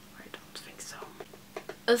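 Faint whispering with small soft mouth clicks, and a woman starts speaking near the end.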